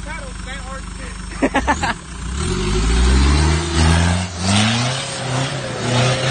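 Mitsubishi Delica L400 Space Gear van's engine idling low, then from about two seconds in revving up in several rising surges under load as the van climbs a steep dirt hump in low gear.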